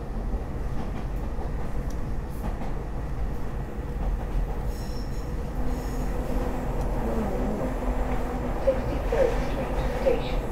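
SEPTA Market-Frankford Line train running on its elevated track, heard from inside the car as a steady rumble of wheels on rail. A couple of brief wheel squeals come about nine seconds in.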